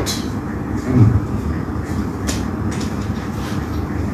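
A pause in a man's talk, filled by a steady low background rumble such as room or air-conditioning noise. About a second in there is a brief low 'mm' from the speaker, and a couple of faint mouth clicks.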